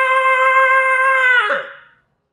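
A man's long, drawn-out cry held on one high note, dropping in pitch and dying away about one and a half seconds in.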